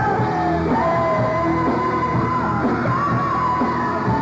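Live hard rock band playing with a male lead singer holding long, high sustained notes over guitars and drums, recorded on a camcorder in a concert hall.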